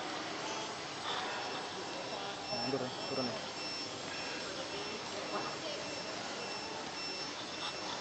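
A thin, high electronic beep repeating about twice a second, starting a couple of seconds in, over steady outdoor background noise.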